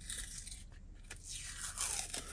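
Paper backing of a roll of 120 film crinkling and scraping in the fingers as it is peeled loose from the spool, with a few small clicks, growing louder near the end.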